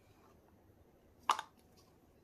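Quiet room tone with one short, sharp click a little past halfway through, from gloved hands handling plastic resin-mixing cups.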